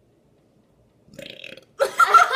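A girl makes a short vocal sound of disgust at a foul smell after about a second of quiet. Loud laughter breaks out just before the end.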